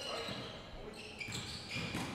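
Quiet basketball game sounds: a ball bouncing on a hardwood gym floor during play.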